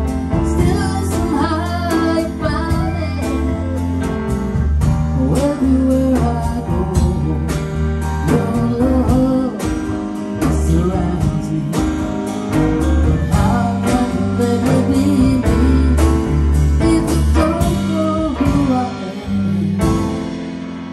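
Live jazz band playing: a flute carries the melody over grand piano, electric bass and drum kit, with many drum strokes throughout. The music starts to fade right at the end.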